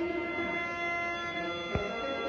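Khaen, the Lao bamboo free-reed mouth organ, holding a steady sustained chord of several notes. A single short soft knock sounds near the end.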